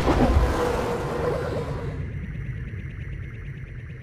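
Outro music sting: a sudden loud hit with echo that fades slowly over a few seconds, leaving a low rumble underneath.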